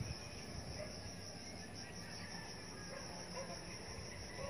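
A steady, high-pitched chorus of insects in the surrounding vegetation, a thin continuous buzz over a faint low rumble.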